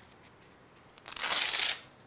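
Hook-and-loop fastener on a fabric belt being pulled apart: one rasping rip lasting a little under a second, starting about a second in.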